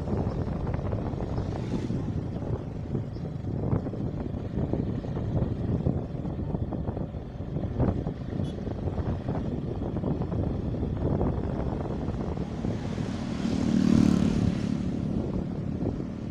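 Motorcycle riding at road speed: the engine running steadily under heavy wind buffeting on the microphone. Near the end the sound swells louder, with a droning tone, for about two seconds.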